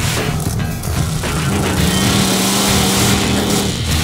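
Rock music playing over the engine of a monster truck driving in a dirt arena.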